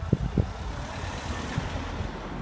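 A hatchback car driving past close by on a narrow street, its engine and tyre noise swelling and then fading, with a few low thumps near the start.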